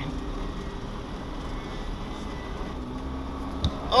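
Cab noise of the Jeep driving slowly on a dirt track: a steady low engine and tyre rumble, with one short thump near the end.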